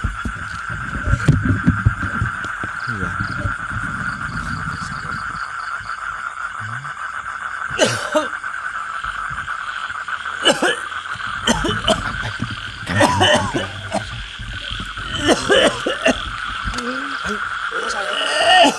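A steady chorus of frogs trilling at night, one pulsing, high-ish band of calls that never lets up. Low rumbling noise fills the first five seconds, and a few short mumbled words come in the second half.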